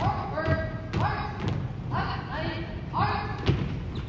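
Marching footsteps of an armed drill team striking a hardwood gym floor in unison, with a shouted voice calling cadence four times, about once a second, in time with the steps.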